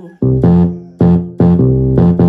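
Yamaha portable keyboard on an electric piano voice playing a bass line in the low register: a run of about five low notes, each struck and then decaying.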